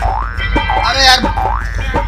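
A comic sound effect: a rising, springy pitch glide heard twice, over a low background hum.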